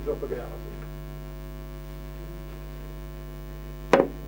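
Steady electrical mains hum, a low drone with a stack of even overtones, with a single sharp click just before the end.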